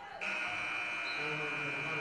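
Arena buzzer sounding one long, steady, high tone during a stoppage after a made free throw, the horn that signals a substitution.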